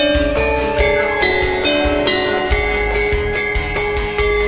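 Live campursari band playing an instrumental passage: a melody of held notes over a pulsing low drum beat.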